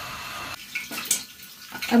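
Raw potato cubes frying in hot oil in a pot under a glass lid: a steady sizzling hiss that drops away about half a second in, leaving quieter, uneven noise with a brief click.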